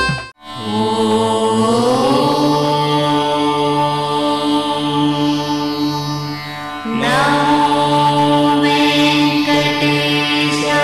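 Indian devotional music: a chanted voice held over a steady drone. It breaks off briefly at the start, glides upward about two seconds in, and comes in again loudly about seven seconds in.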